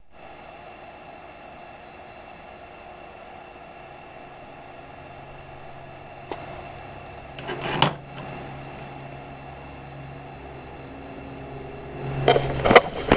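Steady low room hum with a faint click about six seconds in and a brief clatter near eight seconds.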